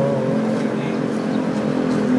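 Street noise with a motor vehicle engine running steadily, and faint voices in the background.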